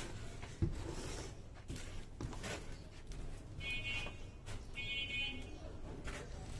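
Gloved hand wiping and smoothing wet gypsum plaster over a round ceiling-rose mould: soft swishing, with a sharp knock about half a second in. About four and five seconds in come two brief high squeaky tones, each under a second long.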